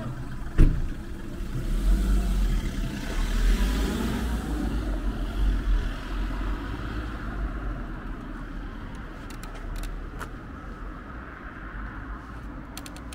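Street traffic: a car drives past, its tyre and engine noise swelling over a few seconds and then slowly fading. A single sharp knock comes about half a second in.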